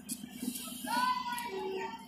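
A high voice singing or calling in short phrases with pitch glides, over a low steady rumble from the DEMU train drawing in.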